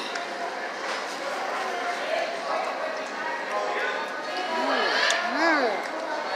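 Indistinct background chatter of voices in a restaurant dining room, with a few short rising-and-falling vocal sounds near the end.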